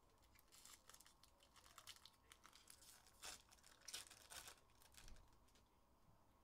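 Faint tearing and crinkling of a trading-card pack's wrapper as it is ripped open: a run of sharp crackles, loudest in a few bursts around the middle.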